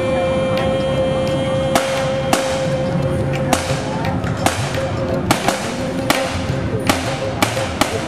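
Rifles fired single shots at a supervised shooting stand: about a dozen sharp cracks at irregular intervals, some close together, over background music.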